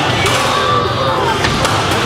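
A combat robot's axe hammering on its opponent's metal shell, with a few sharp metallic knocks, under crowd noise and background music.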